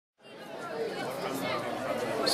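Murmur of many people talking at once in a large hall, fading in from silence just after the start.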